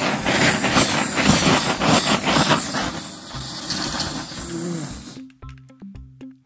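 Handheld butane canister torch burning with a loud rushing hiss. The hiss cuts off suddenly about five seconds in, followed by a few light clicks.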